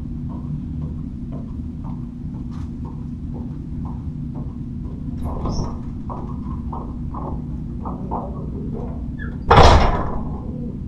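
Glass entrance door being opened about halfway through, then a loud, short sound near the end as it swings shut, over a steady low hum.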